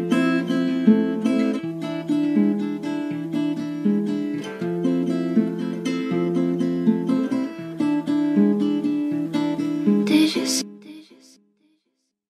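Music: a plucked guitar melody playing on its own with no beat or bass under it, a track's outro. It stops about eleven seconds in, leaving silence.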